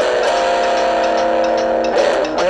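Electric guitar letting a chord ring out for about a second and a half in a blues shuffle, then starting a new phrase near the end.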